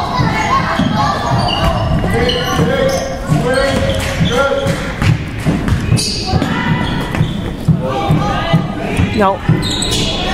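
Basketball dribbled on a hardwood gym floor, a run of short thumps, with players' and spectators' voices in the echoing gym.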